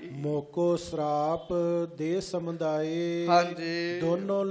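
A man's voice chanting a devotional verse in long, held notes, over a steady low drone.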